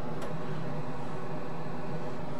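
Solder fume extractor fan running steadily, with a faint click about a quarter of a second in.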